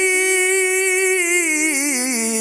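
A man's voice reciting the Quran in the melodic tilawah style, holding one long vowel into a handheld microphone through a sound system. The note stays level for about a second, then steps down in pitch over the second half.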